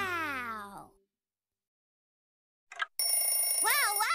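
A children's cartoon theme song ends on a falling glide and cuts to silence. About three seconds in, a new clip starts with a high steady tone and a high-pitched cartoon voice that swoops up and down in pitch.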